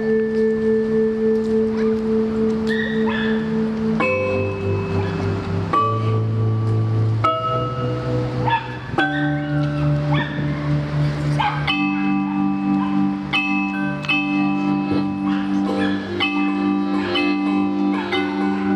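Live accordion and keyboard music: held chords that change every two seconds or so, with short bell-like notes over them. About twelve seconds in it turns to repeated short chords in a steady rhythm.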